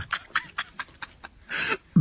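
A man's stifled laughter: a run of short breathy puffs, then a longer breathy exhale near the end.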